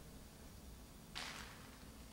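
Quiet room tone, broken about a second in by one brief soft swish.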